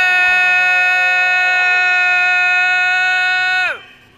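One long, loud horn blast on a single steady note, about four seconds, sagging in pitch as it cuts off near the end.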